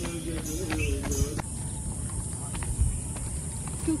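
Kirtan singing heard from a distance, a voice carrying a wavering melody, which cuts off about a second and a half in. After that comes a low outdoor rumble with a few faint taps.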